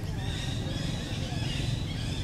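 Outdoor forest ambience: many small high chirping calls overlapping each other, over a low steady rumble.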